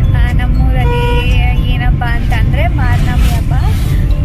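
Steady low rumble of a moving car heard from inside the cabin, under a woman talking and laughing.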